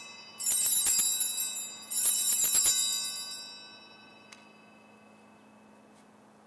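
Altar bells, a cluster of small bells, shaken twice, about half a second and two seconds in, each shake a bright jangle of many high tones whose ringing dies away by about four seconds. They mark the elevation of the consecrated host.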